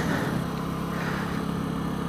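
125cc scooter's small single-cylinder engine running steadily while riding, with even road and air noise around it.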